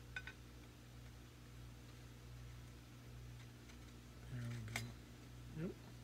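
Faint metallic clicks and taps of the aluminium rifle's parts as the barrel is lined up and fitted, over a low steady hum. A brief wordless vocal sound comes about four seconds in, with another click, and a short rising one near the end.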